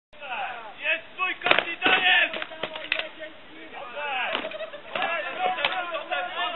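Several irregular sharp strikes of weapons against shields and armour as two armoured fighters trade blows, with spectators' voices.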